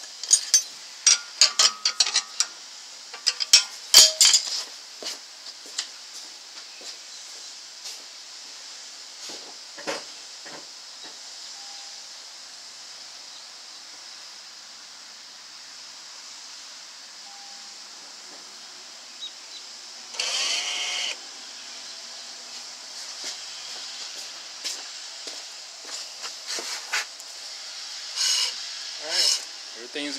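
Clicks and knocks from the car as the brakes are tested, over a steady hiss. About two-thirds of the way through comes a one-second whir, consistent with the rear caliper's electronic parking brake motor driving the piston.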